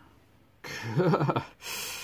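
A man laughing: a short voiced chuckle whose pitch bobs up and down, followed by a breathy exhale.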